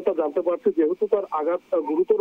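A man's voice talking continuously over a phone line, thin and narrow in tone.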